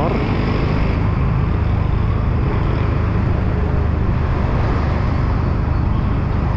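A motorcycle's engine running steadily while riding through town traffic, mixed with road and wind noise.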